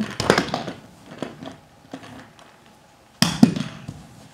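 Short knocks and rustles of a small plastic toy truck being handled and moved across a rug and floor, with a louder clatter a little after three seconds in.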